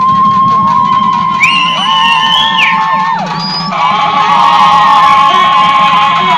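Several women ululating (kulavai, the festive cry raised at Tamil temple rituals), with long high held calls that overlap one after another, several ending in a downward slide. Music plays underneath.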